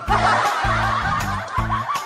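A burst of snickering laughter, setting in suddenly and running on over background music with a steady bass beat.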